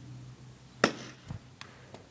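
A bat striking a tossed ball once with a sharp hit a little under a second in, followed by a few faint ticks.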